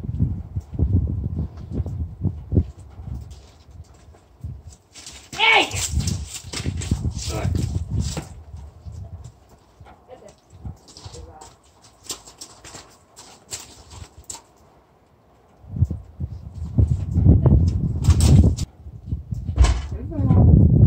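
A mule's hooves shifting on gravel, then knocking on a horse trailer's ramp near the end as it steps up, with a woman's voice now and then.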